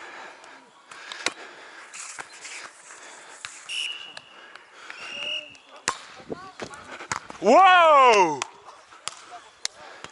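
Beach volleyball being played: a few sharp slaps of hands on the ball, then a loud, drawn-out shout falling in pitch about seven and a half seconds in.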